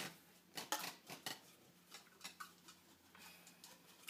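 Faint, scattered clicks and rustles of folded paper slips moving inside a drink tumbler as it is handled, a few louder ticks in the first second and a half.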